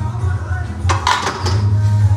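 A loaded barbell with metal weight plates clanks briefly, a quick cluster of metal clinks about a second in, over background music with a steady bass beat.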